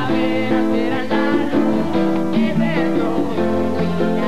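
A pop song played by a live band, with guitar to the fore, while a woman and a man sing a duet over it.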